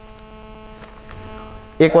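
Steady electrical hum from the sound system, a stack of even tones holding unchanged at moderate level. A man's voice starts speaking near the end.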